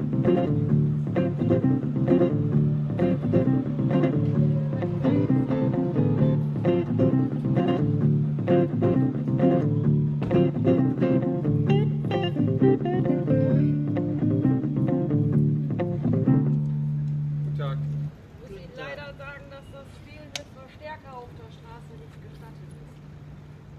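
Live-looped blues on a Harley Benton Bigtone hollow-body electric guitar over a repeating low bass line and a steady beat. Near the end a single low note is held, then the music cuts off suddenly and talking follows.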